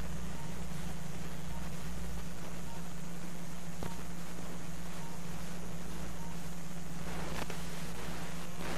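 Steady low hum of operating-room arthroscopy equipment, with faint short high beeps a little more than once a second and a few brief scratchy sounds near the end.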